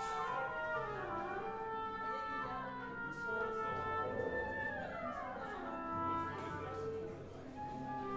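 An orchestra playing classical music: held notes in several voices at once, with sweeping glides in pitch about a second in and again around five seconds.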